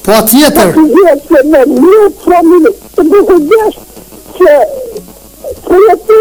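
Speech only: a person talking continuously, with a sharp hiss, like a sibilant or breath, just after the start.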